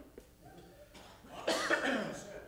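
A person coughs, a short loud burst about one and a half seconds in.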